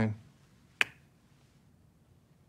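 A man's voice trails off at the very start, then a single sharp click a little under a second in, followed by a quiet room.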